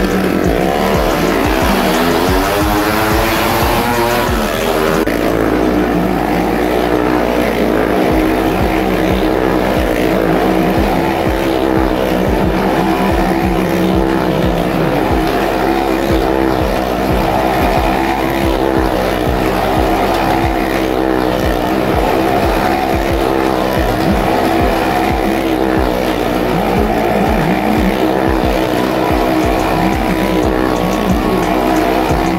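Motorcycle engines revving and running as the riders circle the vertical wooden wall of a well-of-death drum. The pitch climbs over the first few seconds as they pull away and speed up, then holds at a steady high-speed drone.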